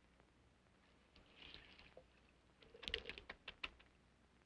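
A faint rustle about a second in, then a quick run of soft clicks and knocks, about eight of them, spread over the next second or so.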